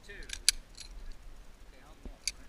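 A few sharp metallic clicks and a brief jingle of shooting gear being handled, the loudest click about half a second in.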